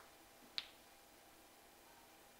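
Near silence, broken once by a single short, sharp click just over half a second in.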